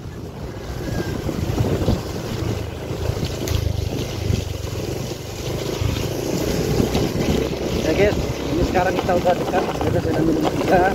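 Wind rushing over the microphone with the low rumble of a motorcycle riding along a rough dirt road.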